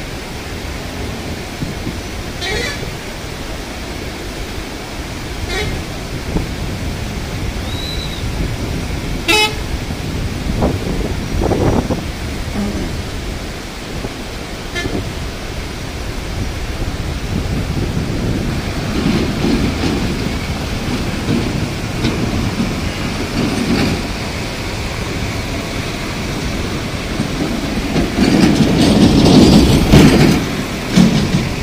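Muddy floodwater rushing steadily over a submerged river crossing, with a vehicle horn tooting a few times in the first ten seconds and voices in the background. A heavy vehicle's engine grows louder near the end.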